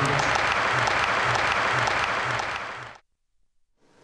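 Crowd applause, steady and then fading out about three seconds in.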